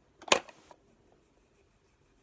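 A single sharp click or knock about a third of a second in, then faint room tone.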